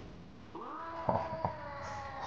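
A drawn-out, high cry that begins about half a second in and holds a steady pitch, with two sharp knocks about a second in, a third of a second apart.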